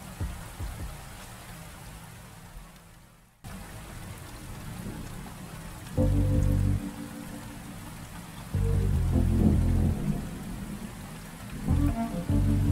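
Steady rain falling, with soft music: deep low notes sound about six seconds in, again around nine seconds and near the end. The sound fades almost out just after three seconds and comes back.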